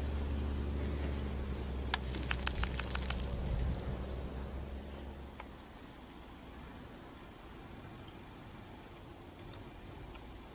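A steady, low engine hum from a vehicle, fading away after about five seconds. About two seconds in there is a quick run of small metallic jingles and clicks.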